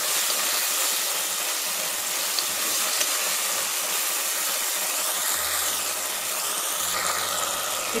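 Prawns and onions frying in hot oil in a pan, a steady sizzling hiss.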